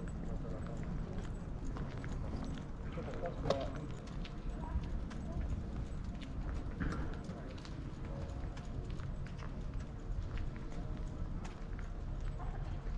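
Footsteps clicking on hard pavement over a low, steady outdoor rumble, with brief voices of passers-by now and then.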